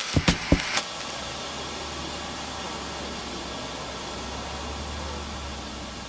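An electronic drum beat cuts off abruptly just under a second in, leaving a steady low hum with an even hiss.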